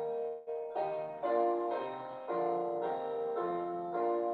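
Keyboard accompaniment of a hymn playing its introductory verse: block chords in hymn harmony, changing about once a second, with no singing.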